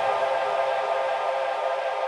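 A held synthesizer chord in a breakdown of a progressive house DJ mix, steady with no kick drum or bass.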